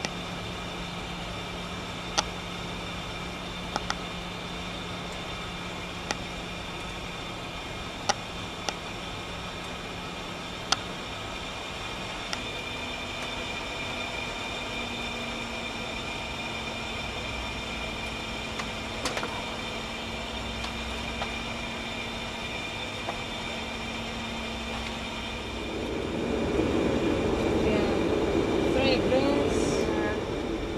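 Steady flight-deck noise of a Boeing 717 in descent: rushing air and a low hum from the engines whose pitch steps up slightly about twelve seconds in, with a few sharp clicks scattered through. The noise grows louder over the last few seconds.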